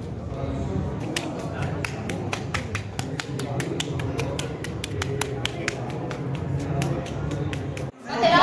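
A quick run of light, sticky clicks, several a second, from hands rubbing tanning product onto oiled skin. Under them is the steady murmur of a large hall.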